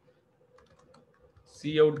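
Faint computer keyboard typing: a few light, irregular keystrokes.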